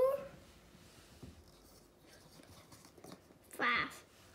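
Quiet room tone with a few faint ticks from chocolate-coated wafers being pulled apart by hand, between a child counting "four" and "five".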